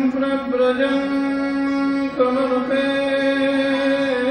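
A man singing a devotional chant, holding long drawn-out notes: one runs to about two seconds in, then he moves to another held note.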